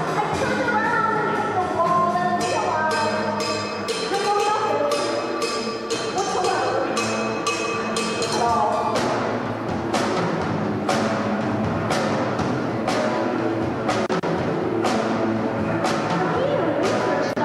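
Live rock band playing: a female vocalist singing over electric guitar and drums. About nine seconds in the singing gives way to guitar and drums alone, with strong drum and cymbal strokes about once a second.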